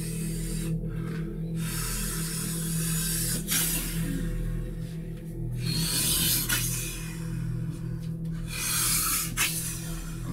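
Three long rasping rustles, the first about two seconds long and the next two about a second each, over a steady low hum.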